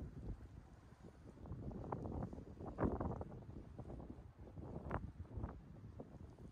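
Wind buffeting the microphone outdoors, an uneven low rumble that swells in gusts and falls back, strongest about three seconds in and again near five seconds.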